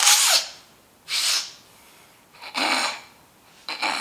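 A man's four short, forceful sniffs and snorts through the nose, about a second apart, faked as if sucking a rubber band up his nose.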